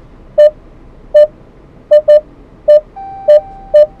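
Jeep Cherokee's ParkSense rear parking-sensor beeper sounding a string of short electronic beeps while reversing, which come a little closer together toward the end as the rear of the car closes on an obstacle. A steady, higher warning tone sounds under the beeps for about the last second.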